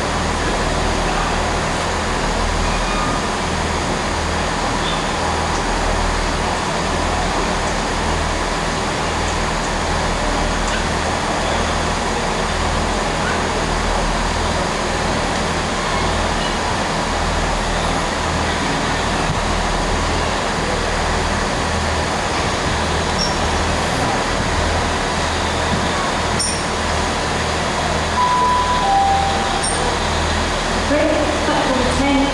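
Steady rumbling noise with uneven low pulsing as the LNER A3 Pacific steam locomotive 60103 Flying Scotsman approaches slowly along the platform. Near the end comes a brief two-note tone, falling in pitch.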